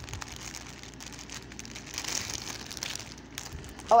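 Clear plastic jewelry packaging crinkling and rustling irregularly as it is handled.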